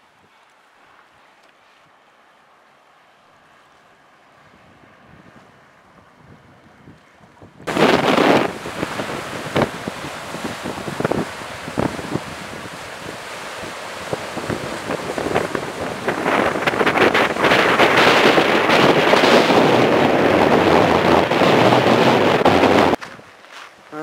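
A quiet stretch, then about eight seconds in a sudden switch to loud, gusty wind buffeting the microphone over surf breaking on a rocky shore. The wind grows stronger in the last several seconds.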